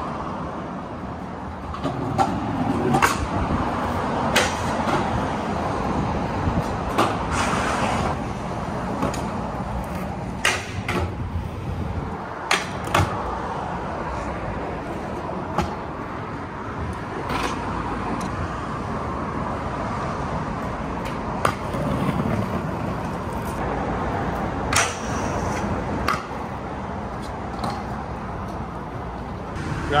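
A street scooter being ridden on concrete and asphalt: its small hard wheels give a steady rolling rumble, broken by a dozen or so sharp clacks of the deck and wheels hitting the ground on pops and landings.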